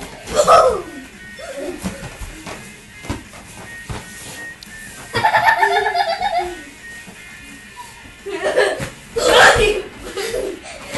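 People laughing and shrieking, with loud outbursts about half a second in and again near the end, over music playing in the background.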